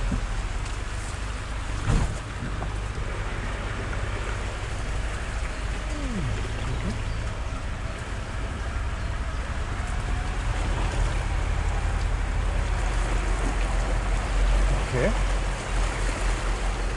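Ford Ranger Raptor pickup crawling along a muddy track, heard inside the cab: a steady low engine rumble under the noise of tyres working through mud and puddles, with a single knock from the vehicle about two seconds in.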